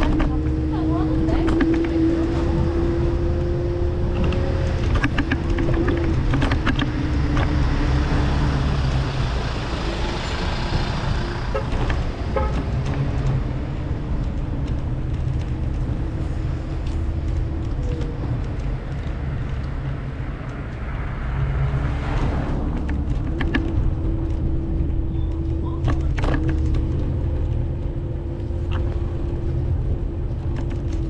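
City street noise with a steady low engine hum and a held tone that rises slowly in pitch, fades midway and returns, broken by a few brief knocks.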